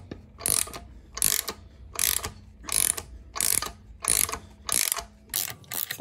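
Ratchet wrench worked back and forth on the forcing bolt of a harmonic balancer puller, a short burst of ratchet clicks about every three-quarters of a second, as the crank pulley is drawn off a 5.3 LS engine.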